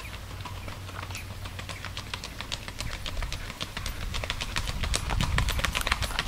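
Hooves of a bay gelding striking a paved road at a rack, a rapid, even run of hoofbeats that grows louder toward the end as the horse comes nearer.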